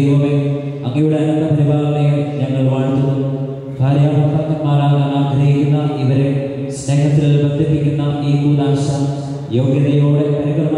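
A priest chanting a liturgical prayer in a steady monotone, in phrases of about three seconds with short breaks between them.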